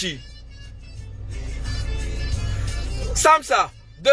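Low rumble of a motor vehicle, heard from inside a car. It grows louder over the first second or so, holds, then drops away sharply a little after three seconds, when a brief word is spoken.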